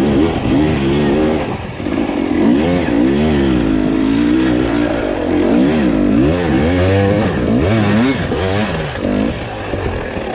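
Dirt bike engine revving up and down over and over, its pitch rising and falling every second or so as the throttle is worked on and off through deep, loose sand.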